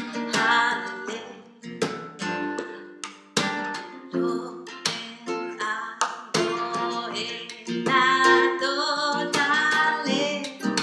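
A woman singing to her own strummed acoustic guitar, capoed up the neck. The voice is strongest near the start and again over the last couple of seconds.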